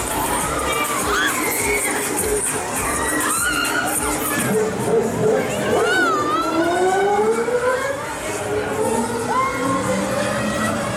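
Riders on a spinning fairground ride screaming and shouting, many high voices overlapping in gliding squeals.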